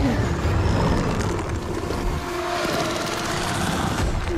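Film soundtrack: a deep, loud rumble with faint sliding and held tones above it. The rumble eases off about halfway through.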